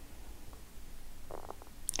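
Quiet room tone with a low steady hum, and one faint brief sound about a second and a half in.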